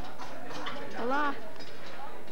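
People's voices, with one short call about a second in whose pitch rises and then falls, over a few faint light knocks.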